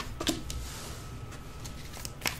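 Tarot cards being handled and dealt from the deck onto a cloth-covered table: a few light clicks just after the start, then a faint steady hiss.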